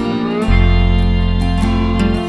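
Instrumental passage of a band song: guitar over sustained bass notes and a steady beat, with a new bass note coming in about half a second in.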